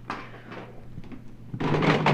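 Plastic Nerf blasters knocking and rattling in a plastic bin as they are handled: a sharp knock at the start, then a louder clatter near the end.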